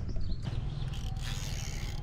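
Baitcasting reel being cranked to bring in line, a steady mechanical scraping.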